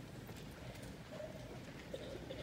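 Faint room noise of a hall with a few light knocks and shuffles.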